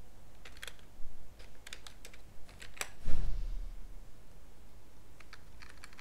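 Computer keyboard being typed on in short runs of key taps, with a dull thump about three seconds in.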